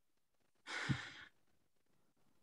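A person sighs once: a short, breathy exhale about half a second long, with a brief voiced dip in the middle.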